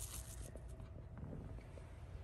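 A few faint clicks and rustles of a plastic measuring cup and dry rolled oats being handled, over a low steady hum.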